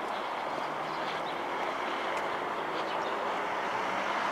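Street traffic noise: a steady hiss of vehicles on the road with a faint low hum, slowly growing louder.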